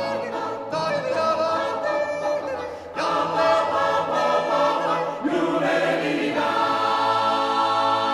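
Italian mountain-song choir (coro di montagna) singing a cappella in close harmony. A new phrase begins about three seconds in, and a long chord is held through the last two seconds.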